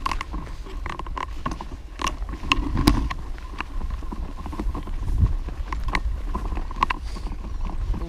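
Baby stroller rolling down a steep, bumpy dirt path: its frame and wheels rattle and creak with irregular knocks, over a steady low rumble on the camera mounted to it.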